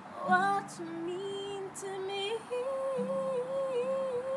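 A woman singing with acoustic guitar accompaniment: her voice slides up into a few sung notes, then holds one long note with vibrato through the second half.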